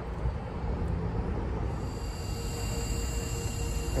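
Steady low rumble, and from about halfway a steady hum with a faint high whine: a DC fast charger running while it charges the car.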